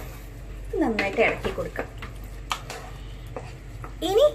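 A spatula stirring raw chicken pieces into thick curry gravy in a metal pan, with a few light clicks of the utensil against the pan in the second half.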